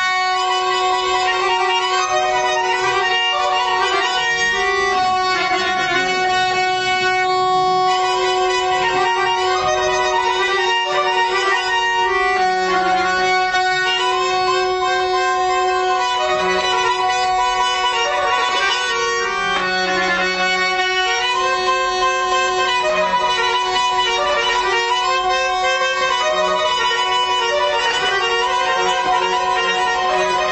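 Small ensemble of Azerbaijani traditional instruments playing: a bowed-string melody over a steady held low note, with accordion.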